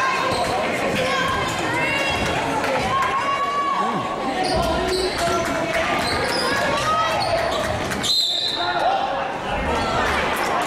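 A basketball bouncing repeatedly on a hardwood gym floor, with spectators talking over it. A short, high referee's whistle sounds about eight seconds in, stopping play.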